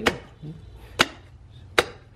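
Cleaver chopping through a roast pig's crispy skin and rib bones: three sharp chops, the first right at the start, then about a second apart.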